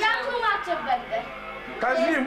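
High-pitched children's voices, rising and falling in pitch, with a short lull past the middle.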